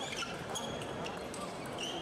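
Table tennis ball clicking off bats and table in a fast doubles rally, with a few short shoe squeaks on the court floor, over the murmur of a crowd in the hall.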